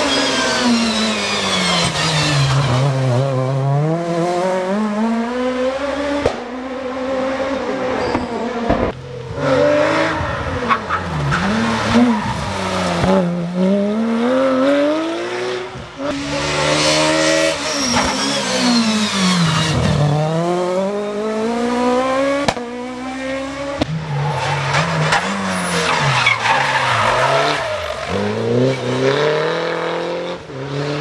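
Rally cars at full race pace, engines revving hard, pitch climbing through each gear and dropping on every shift and on braking, with tyre squeal in the corners. Several cars go by one after another, the first a Peugeot 306 Maxi.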